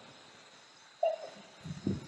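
A pause in a man's talk: quiet room tone, broken about a second in by one brief, sudden sound that fades quickly, with faint low sounds near the end.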